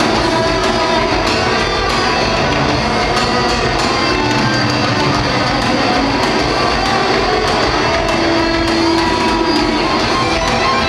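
Heavy metal band playing live: distorted electric guitars over bass guitar and drums, loud and steady, heard from among the crowd in an arena.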